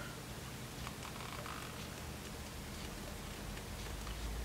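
Faint scraping of a utility knife blade slicing into the hard overmoulded plastic of a Lightning cable plug, a few light scrapes and ticks about a second in, over a low steady hum.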